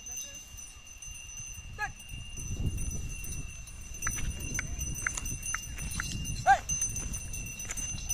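A pair of Hallikar bullocks pulling a wooden plough through dry soil: a low rumble of the plough and hooves that grows about two and a half seconds in, with a few light bell tinkles from the harness. A short pitched call rings out about six and a half seconds in, the loudest sound, over a steady high-pitched drone in the background.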